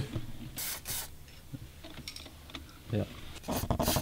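Aerosol contact spray hissing from a can with a straw nozzle in short bursts onto an electrical connector: two brief squirts about half a second and one second in, and another near the end.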